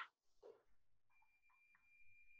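Near silence: room tone, with a faint steady high-pitched tone coming in about halfway through.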